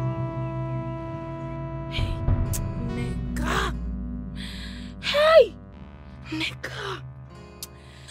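Held, sustained background music fades out while a woman wails and sobs in grief, with breathy gasps and a loud falling cry about five seconds in.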